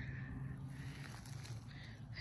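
Quiet outdoor ambience with a steady low hum beneath faint background noise.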